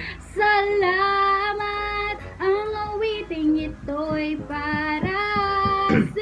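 A woman singing a slow song melody solo, one voice holding long notes in short phrases with brief breaks between them.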